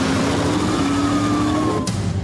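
Car engine accelerating, its pitch rising steadily over a loud rushing noise, with a sharp hit near the end.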